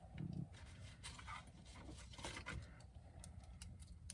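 Quiet close-miked mouth sounds from eating: a brief low hum just after the start, then a scatter of soft clicks.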